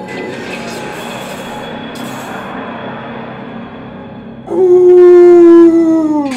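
Soundtrack of the animated clip being watched: soft music, then about four and a half seconds in a loud, held tone that slides sharply down in pitch as it dies away.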